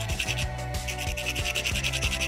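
Background music with a steady beat, over rapid rasping strokes of an emery board filing a fingernail.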